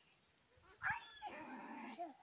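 Small black pig squealing as a child handles it: a short squeal that rises and falls about a second in, then a longer held squeal near the end.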